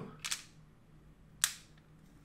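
A small ball inside a layered wooden maze puzzle rattling briefly, then dropping through to the layer below with one sharp click about a second and a half in.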